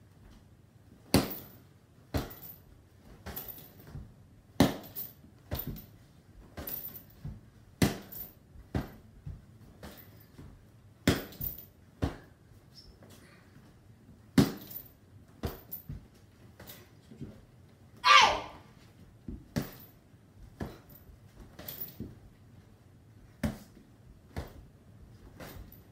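Punches and kicks smacking a hanging heavy punching bag: irregular sharp hits, about one a second, some in quick pairs. About three quarters of the way through there is one louder, longer sound with a pitch to it.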